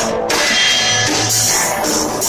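Live rock band playing: a drum kit with cymbals and a hollow-body electric guitar.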